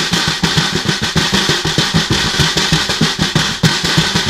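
Snare drum played with bare hands: a quick, continuous run of strokes, about six or seven a second.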